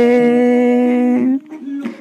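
A singing voice holding one long, steady note, which stops about one and a half seconds in.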